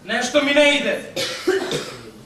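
A man's voice making vocal sounds, broken about a second in by a harsh cough, then more voice.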